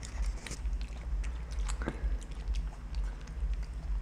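Black-capped capuchin monkey chewing pizza toppings, heard as faint, irregular small clicks over a low steady hum.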